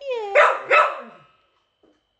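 A dog 'talking' in a drawn-out, wavering yowl of two pitched syllables, cut off a little over a second in. It is the sound of a jealous tantrum.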